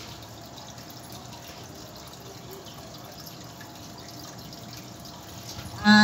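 Low steady background noise with faint scattered ticks. Near the end a woman's voice through a microphone and loudspeaker comes in suddenly and loudly.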